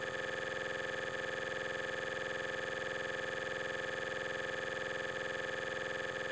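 A steady, unchanging drone of many held tones, like a sustained synthesizer pad, playing back with the drone footage.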